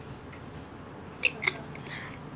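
Two sharp clinks about a quarter of a second apart, from a glass bottle being set down on a table.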